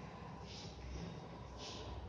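Faint chalk strokes on a blackboard as words are written: two short scratches, about half a second in and near the end, over a low background hum.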